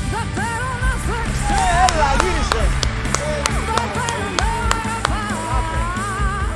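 A woman singing a rock song with a live band, her voice gliding up and down in drawn-out phrases over steady bass and drums, with sharp percussion hits through the middle.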